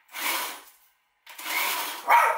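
Countertop blender grinding whole small bluegill into a paste, run in two short pulses of under a second each.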